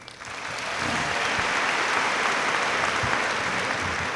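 Audience applauding: the clapping swells over the first second, holds steady, and begins to fade near the end.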